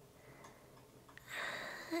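Near-silent room tone, then a close-miked in-breath through the mouth in the second half, drawn just before speaking.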